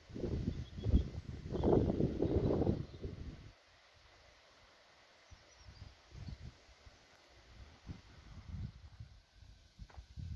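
Wind buffeting the microphone outdoors, in heavy gusts for the first three seconds or so, then dropping to light, intermittent puffs.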